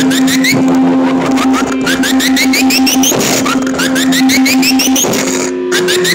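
Experimental electronic synthesizer music: a steady low drone that steps up in pitch about five seconds in, under rapid high clicking and repeated runs of short rising chirps.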